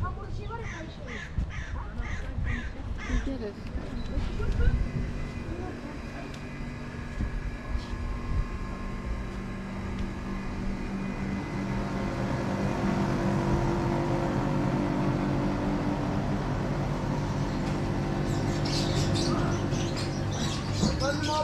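Outdoor street ambience with people's voices in the background. A bird calls about twice a second for the first three seconds, and more bird calls come near the end.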